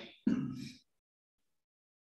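A man's brief, breathy laugh early in the first second.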